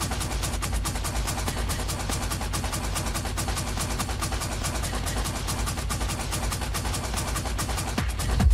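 Techno in a breakdown: a dense, fast run of hi-hat-like percussion over a steady low rumble, with the regular kick drum dropped out.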